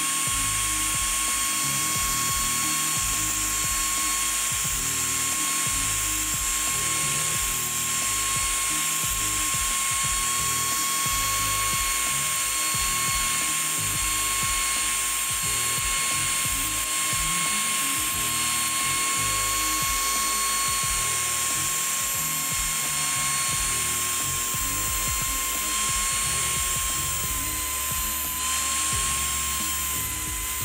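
Router spindle of a mostly printed CNC (MPCNC) whining steadily as its end mill cuts a nylon chopping board, with a high hiss of cutting. The pitch of the whine dips slightly near the end.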